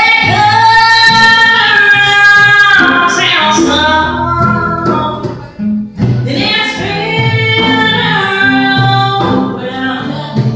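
Live jam-session music: a singer holds long sung notes over a lower instrumental accompaniment, pausing briefly about halfway through before the next phrase.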